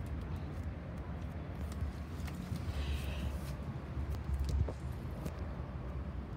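Homemade slime being kneaded and squeezed in the hands, with a few faint sticky clicks, over a steady low background rumble.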